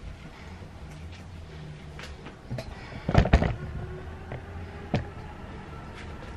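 Towel rubbing and bumping as a wet cat is dried by hand, with scattered knocks, a loud cluster of knocks a little past midway and a single sharp knock about five seconds in, over a low steady hum.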